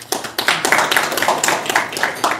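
An audience clapping steadily, welcoming a guest whose name has been announced from the podium.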